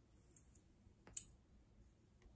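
Very quiet hair handling close to a microphone: long fingernails and a plastic comb in a child's hair, with a couple of light clicks and one sharp click about a second in.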